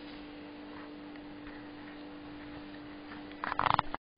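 A steady low hum throughout. Near the end comes a short, loud burst of rapid clicking and rustle, and then the sound cuts off abruptly.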